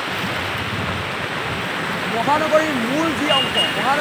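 Steady rushing noise of heavy rain and floodwater on a city street, with a person speaking from about halfway in.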